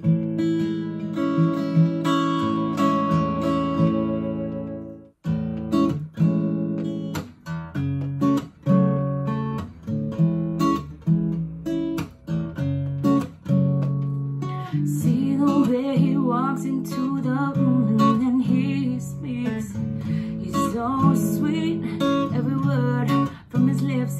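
Solo acoustic guitar playing a song intro: a chord is left ringing, there is a short break about five seconds in, and then a steady strummed rhythm of chords follows.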